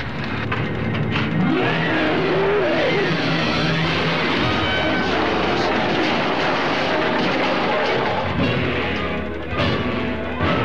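Loud, dense orchestral film score from a 1950s horror film, with a few sliding notes two to three seconds in.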